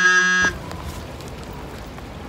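An edited-in buzzer sound effect: a harsh, steady, low buzzing tone that cuts off abruptly about half a second in, dubbed over a remark to censor it. After it comes a steady hiss of rain and outdoor background noise.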